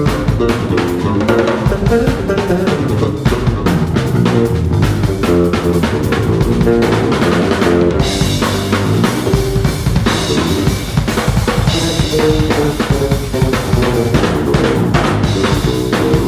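Live instrumental trio of steel pan, drum kit and electric bass playing: quick pitched steel pan notes over a busy drum pattern and bass line, with cymbals joining about halfway through.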